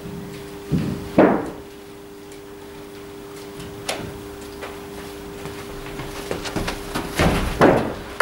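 Knocks and thuds in an indoor cricket net hall, over a steady low two-note hum. Two sharp knocks about a second in are the loudest, a lighter tap comes near four seconds, and a quick run of thuds near the end comes as a bowler runs in to bowl.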